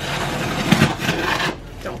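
Box cutter blade slicing along the packing tape and cardboard of a shipping box: a rasping scrape lasting about a second and a half.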